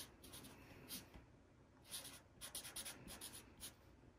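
Faint strokes of a marker pen writing on paper, several short scratchy strokes with gaps between, coming quicker in the second half as an equation is written out.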